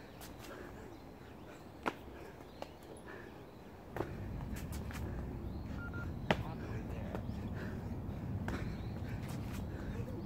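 Hands and feet slapping onto a paved path during burpees, with a few sharp knocks, and a person breathing hard from the exertion. A low rushing background noise grows louder about four seconds in.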